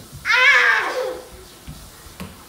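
One high-pitched cry lasting about a second, wavering at first and falling in pitch at the end, followed by a few faint thumps.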